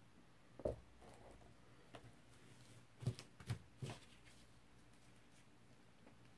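A few soft knocks, one about a second in and a quick cluster of three a little past halfway, from a paint-covered vinyl record being tilted and set back down on the cups it rests on, against quiet room tone.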